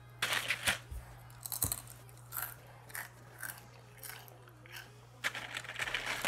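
Potato chips being bitten and chewed, crunching in irregular bursts with short pauses between.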